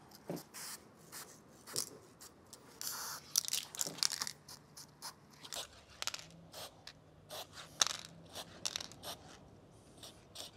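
Spray paint can with a needle cap hissing in many short, irregular bursts while thin lines are sprayed close to a wall, with a slightly longer spray about three seconds in.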